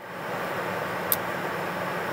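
Steady airplane cabin noise, an even rush with a low hum, fading in over the first half second. A single sharp click comes about a second in.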